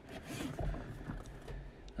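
Hard plastic PSA graded-card cases scraping and sliding against one another as one is drawn off a stack and handled. The scrape is loudest over the first second.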